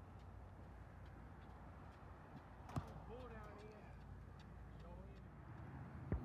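Faint, distant voices over a low steady hum, with one sharp knock about three seconds in.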